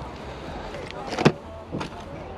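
Faint background voices over a steady low rumble, with two sharp clicks a little over a second in, about half a second apart.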